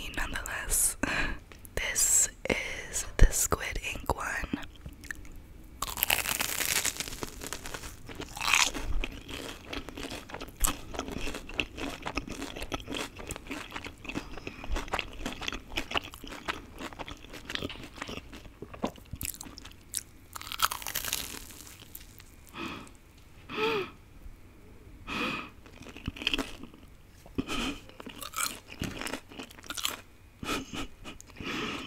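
Close-miked eating sounds: crunchy bites into a crispy-coated Korean cheese corn dog, then chewing with wet mouth clicks. The crunches come in bursts, with a few louder, longer ones.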